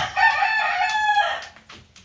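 A rooster crowing once, a single long call lasting just over a second.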